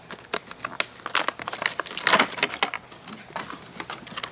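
Clear plastic blister packaging of a toy box crinkling and crackling in irregular bursts of clicks as it is pulled and handled to free the doll, busiest in the first half and thinning toward the end.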